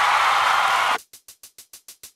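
Editing sound effect for a scene transition: a steady hiss of static that cuts off sharply about a second in, then rapid ticking at about seven ticks a second.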